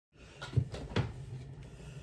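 A few short, soft knocks and rustles from someone shifting on a couch and moving their hands, clustered around half a second to a second in, over a low steady room hum.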